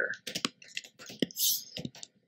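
Typing on a computer keyboard: an irregular run of quick key clicks as a word is typed, with a brief soft hiss near the middle.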